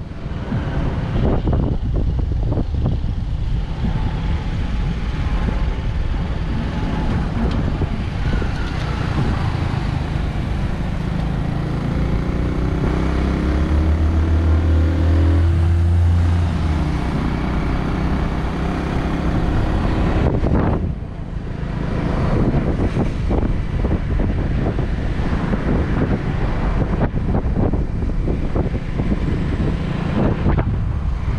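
Motorcycle engine running with wind rushing over the microphone while riding on the back through traffic. Near the middle a deeper engine hum swells for a few seconds with its pitch rising and falling, and the sound briefly dips about two-thirds of the way through.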